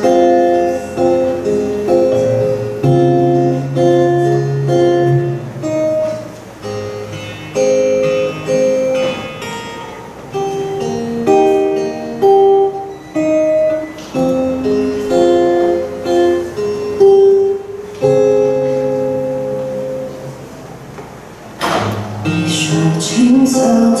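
Solo acoustic guitar playing a song's introduction, individual notes picked in a flowing pattern. Near the end a singing voice comes in over the guitar.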